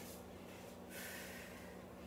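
A woman breathing out hard, a breathy rush about a second long in the second half, as she pushes up from a one-leg squat off a box. A faint steady hum runs underneath.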